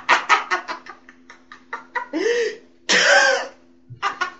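A person coughing: rapid breathy pulses that trail off, then two short loud coughs about a second apart, the second louder. A faint steady hum runs underneath.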